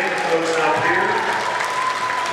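Audience applauding, with a few voices mixed in.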